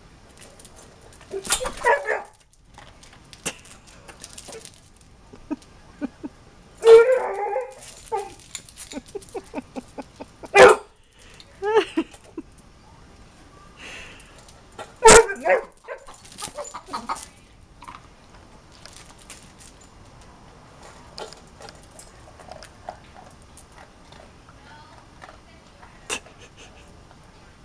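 Basset hound barking at a hen that is going after her food: several loud barks spread out, with shorter, quieter yips between them.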